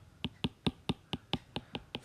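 Stylus tapping on a tablet screen while short hatching strokes are drawn: a quick, even run of about ten sharp clicks, about five a second.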